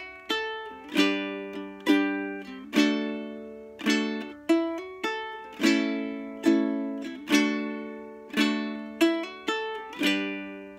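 Ukulele played slowly without singing: chords sounded about once a second, each ringing and fading before the next, with a few single picked notes between them, opening on a D chord.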